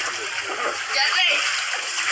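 Water splashing and sloshing in an inflatable kiddie pool as people move about in it, with voices over the splashing.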